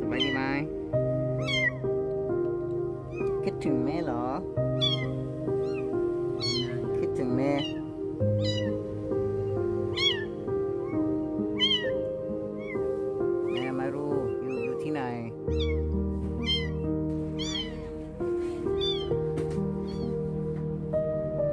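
A young kitten mewing over and over in short high-pitched cries, with a few longer, louder cries among them. Soft background music with sustained notes plays underneath.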